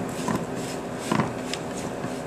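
A utensil stirring dry rolled oats, raisins and chopped walnuts in a bowl, mixing the cinnamon through so it doesn't clump: a few short, irregular scraping strokes over a steady low hum.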